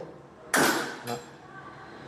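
A room door shut firmly with one solid bang of door and latch about half a second in, dying away quickly, then a smaller click. It shuts very solidly.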